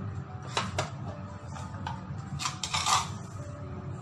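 Light clicks and knocks of seasoning containers being handled over a kitchen counter, a couple of sharp clicks about half a second in and a denser clatter about two and a half to three seconds in.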